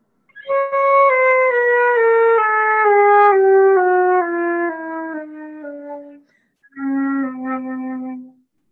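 Flute playing a slow descending scale in small steps over about an octave, one note at a time. After a brief break it holds a long low note.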